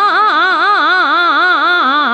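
A singer running a fast vocal taan in Raag Bhairav, tuned to C#: the sung line sways up and down through quick notes about five times a second, unbroken through the whole stretch, over a faint steady drone.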